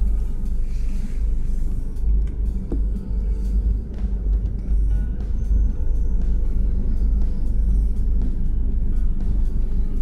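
Low, steady rumble of a passenger train, heard from on board as it pulls out of a station, with faint scattered clicks.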